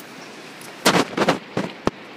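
Quiet for nearly a second, then a run of four sharp knocks and clatters, the last a single crisp click near the end.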